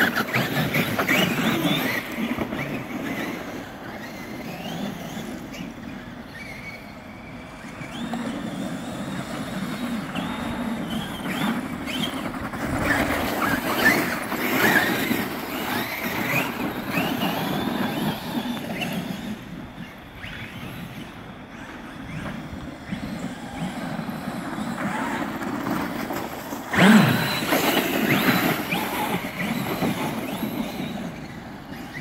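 Traxxas X-Maxx 8S RC monster trucks driving hard: their brushless electric motors and drivetrains whine up and down in pitch as they accelerate and let off, with tyres churning through slushy snow. There is a sharp, loud knock about 27 seconds in.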